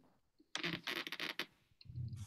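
Yoga belt's cotton webbing being pulled through its buckle to form a loop: a rasping sound in several quick strokes over about a second, then a soft low bump near the end.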